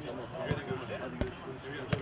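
A football being kicked back and forth by foot, three dull thuds about two-thirds of a second apart, with players' voices calling in the background.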